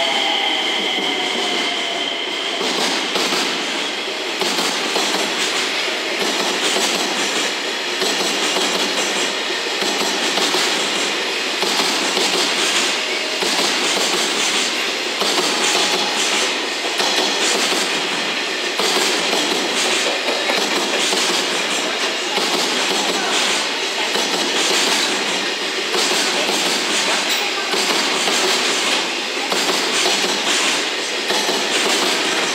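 A JR Freight container train's flat wagons passing steadily, wheels clicking over rail joints in a continuous clatter with a rumble beneath. In the first couple of seconds, a whine falling in pitch fades out as the 227 series electric train moves away.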